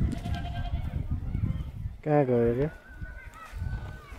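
A goat bleating: one long, slightly falling bleat about two seconds in, with fainter calls before and after it, over a low rumble.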